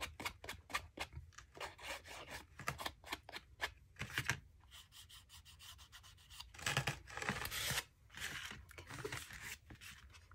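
A distress ink pad rubbed along the edges of a paper playing card in quick short strokes, about four or five a second, with a longer, louder rub about seven seconds in.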